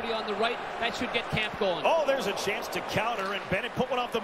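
Ice hockey play heard at rink level: sharp clacks of sticks and puck and the scrape of skates on the ice, repeated every fraction of a second, over arena crowd noise and voices.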